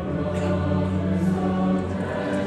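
A large choir singing held chords, the harmony moving to a new chord at the start and again near the end.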